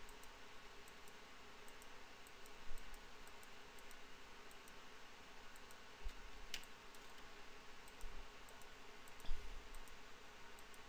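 Faint, irregular clicking of a computer mouse button as points are clicked one after another, with a few soft low bumps.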